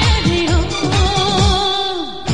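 Film song: a voice holds one long, slightly wavering note over a steady beat of low drum thuds that fall in pitch, about four a second.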